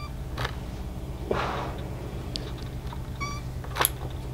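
Household iron pressed and slid over pinned, pleated cotton fabric, giving soft hisses. Two short high-pitched chirps come about three seconds apart, and a sharp click comes near the end.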